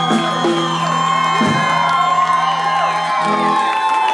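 A rockabilly band's closing chord held and ringing out, the low notes stopping about three and a half seconds in, while the crowd whoops and cheers over it.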